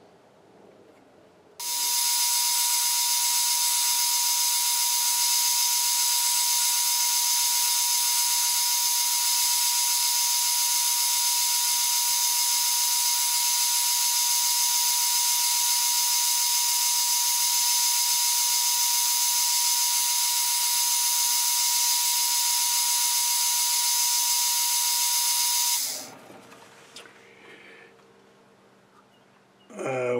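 Metal lathe turning a point on a steel bar: a loud, steady, high whine of several fixed tones. It starts abruptly about two seconds in and cuts off abruptly a few seconds before the end.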